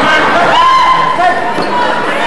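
Basketball game in a gym: a ball bouncing on the hardwood floor under a steady mix of players' and spectators' voices echoing in the hall.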